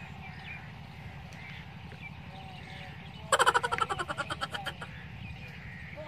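Rural outdoor ambience: a steady low rumble with faint bird chirps. About three seconds in, a loud rapid rattle of about ten pulses a second fades away over a second and a half.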